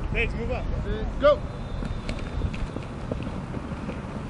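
Distant shouted calls from players, a few short calls in the first second and a half with the loudest about a second in, over a steady low rumble of wind on the microphone.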